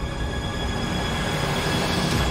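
Tense background music from the drama's score: sustained high notes over a low rumble, swelling slightly louder toward the end.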